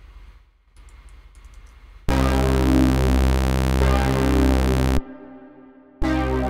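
Faint mouse clicks, then about two seconds in a Kepler Exo software synthesizer sounds a loud held chord with a deep bass underneath. It is cut off suddenly about three seconds later, leaving a short fading tail.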